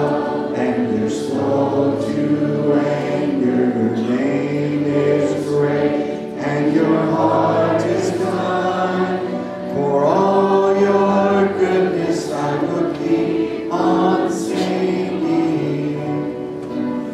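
A large congregation singing a hymn together, many voices holding long sustained notes.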